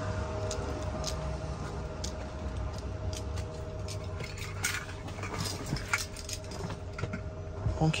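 Scattered light clicks and knocks over a steady low hum as someone climbs into a van's driver's seat through the open front door.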